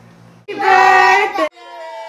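A group of children and adults shout together in unison for about a second. It breaks off suddenly into a steady held tone.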